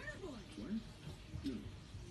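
Voices from an animated film playing on a television, speaking in rising and falling tones at a low volume.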